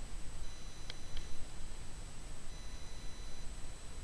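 Low background room noise with faint steady high-pitched electronic tones, and two soft clicks about a second in.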